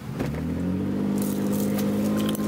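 Car engine starting, rising briefly in pitch as it catches and then running steadily, heard from inside the car.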